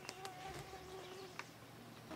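A fly buzzing in a steady, faint drone that dies away a little over a second in, with a few faint clicks around it.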